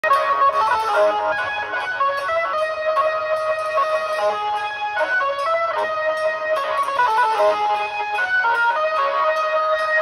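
Banjo-party street band playing through horn loudspeakers: an amplified plucked-string melody, the lead of an Indian banjo, over a light cymbal ticking steadily, with the drums mostly holding back.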